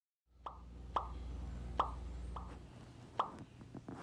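A series of five short, sharp pops, each dropping quickly in pitch, spaced about half a second to a second apart, over a low steady hum.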